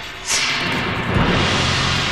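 Dramatic TV background music between lines of narration: a whoosh sweeps down about a third of a second in, and a low swell builds through the second half.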